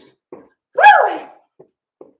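A woman's short shouted "woo" of encouragement about a second in, its pitch falling as it trails off.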